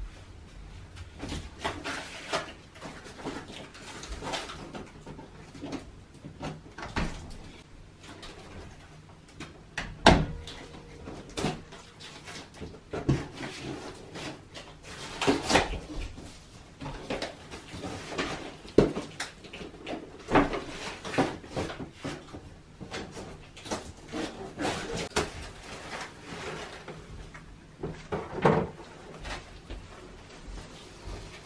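Large flat-pack cardboard boxes being handled and pulled open: irregular knocks, scrapes and rustling of cardboard and packing, with a few sharper bangs, the loudest about ten seconds in.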